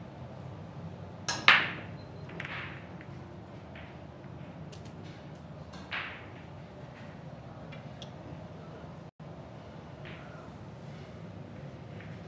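Heyball break shot: about a second and a half in, the cue strikes the cue ball and it cracks loudly into the racked balls. Scattered clicks of balls knocking together follow, with another clack a few seconds later, over a low steady hall hum.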